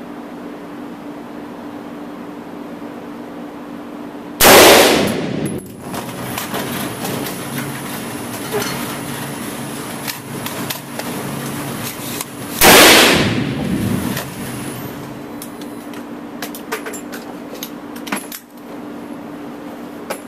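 Two rifle shots about eight seconds apart, each echoing for over a second off the walls of an indoor shooting range, over a steady background hum. Small sharp clicks and taps of handling follow near the end.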